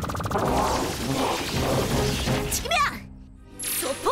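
Cartoon sound effects of a karaoke-machine robot malfunctioning: a rapid buzzing rattle, then a jumble of crackling, clattering mechanical noise over background music. It drops almost to quiet about three seconds in.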